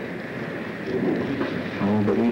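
Steady hiss and rumble from the soundtrack of an old black-and-white film, with faint, indistinct voice sounds; a voice starts speaking clearly near the end.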